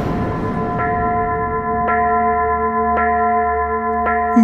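Background score: a ringing bell tone struck about once a second over a low drone, after a swell of music fades at the start.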